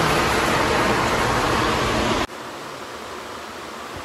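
Steady, even rushing noise with no distinct events. It drops suddenly to a quieter hush a little over two seconds in.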